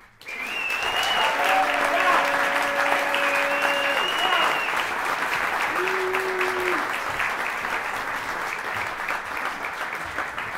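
Small audience applauding, with a few cheers and whistles over the clapping; the applause breaks out suddenly and slowly dies down.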